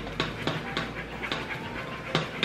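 Wooden spoon stirring melted marshmallow and butter in a metal saucepan, knocking against the pot about three times a second.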